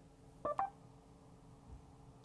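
A short two-note electronic chime from the Mercedes MBUX voice assistant, about half a second in, as it takes the spoken question before replying. A faint steady hum lies under it in the quiet car cabin.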